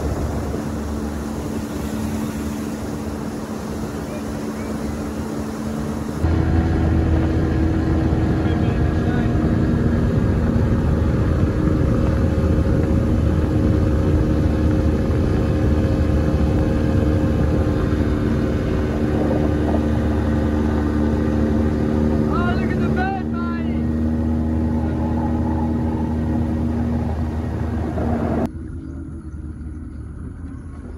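Outboard motor of a small boat running steadily under way, with water rushing along the hull. The sound changes abruptly in level about six seconds in and again near the end. A short run of high chirping calls comes a little past the middle.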